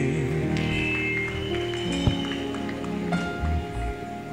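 Soft background music of held, sustained keyboard chords, with a single sharp click about two seconds in.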